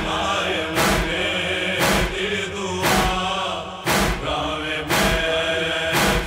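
Noha chorus: voices chanting a drawn-out lament over a sharp, even beat about once a second, the matam (chest-beating) rhythm of Shia mourning recitation.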